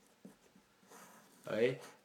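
Felt-tip marker writing on paper, a faint scratching about a second in, followed near the end by a brief spoken sound from the lecturer.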